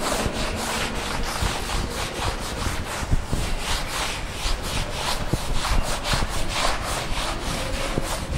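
A duster rubbing across a chalkboard, erasing chalk writing in quick, even back-and-forth strokes, several a second.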